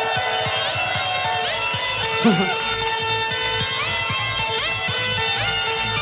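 Hardstyle music from a DJ set starts: a distorted lead playing repeated upward-sliding notes over a held tone, with a steady kick drum coming in about a second and a half in. A man laughs briefly about two seconds in.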